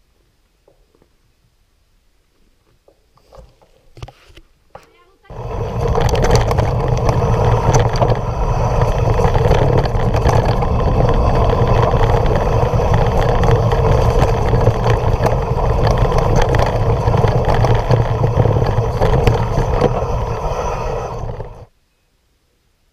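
Loud, continuous rattling and rushing noise from a bike-mounted camera riding a rough, rocky mountain-bike trail. It starts abruptly about five seconds in after a few faint clicks and cuts off sharply near the end.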